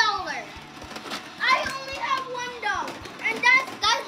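Young children's high-pitched voices in excited bursts of exclamation and chatter, with scattered clicks and clatter of toys being rummaged through in a toy box.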